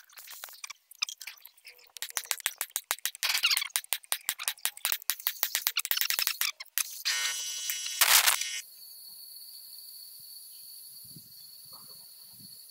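Rapid metallic clicking and rattling of hand tools on a loader gearbox's steel gear and shaft, with a sharp metal knock about eight seconds in. After that only a faint steady high tone remains.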